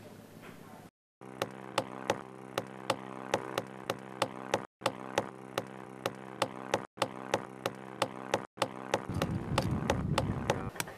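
Knife clicking and knocking against a raw oyster shell as it is pried open, a few sharp clicks a second, over a steady low hum.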